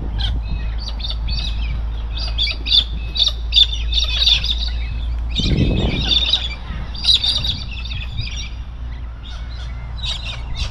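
A flock of galahs calling from a tree: many short, high calls overlapping in dense bursts, with brief lulls.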